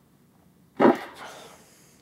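A single hard blast of breath blown through a trumpet's leadpipe with the valves held down, driving a Herco Spitball cleaning plug through the tubing: a sudden rush of air about a second in that tails off over about a second.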